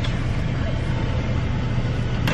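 Car cabin noise: a steady low hum from the car's engine idling while stopped.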